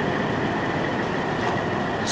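Steady, even rushing noise with a faint thin high tone running through it and no voice.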